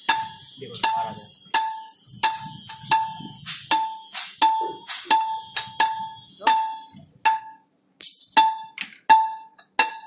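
Steady rhythmic metallic clinks, about one every 0.7 s, each with a short bell-like ring at the same pitch: metal striking metal.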